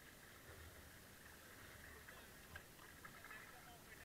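Near silence: faint water noise around a paddled kayak on a calm river, with a few light ticks near the end.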